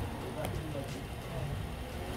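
Steady low background noise, with a few faint clicks as a metal retaining clip on a diesel fuel filter is pushed at by hand and does not yet seat.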